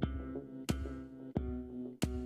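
Music with a steady beat: sustained synthesizer-like chords, each struck anew about every two-thirds of a second.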